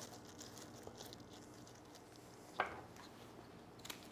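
Faint handling of birch branches and iris stems in a glass vase, with small scattered ticks and one short sharp click about two and a half seconds in.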